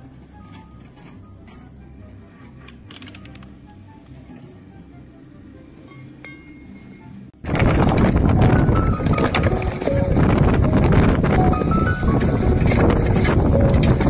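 Soft background music, then, about seven seconds in, a sudden loud, dense clatter of knocks: hammer blows on a frozen pipe and cylinders of ice tumbling out onto a pile.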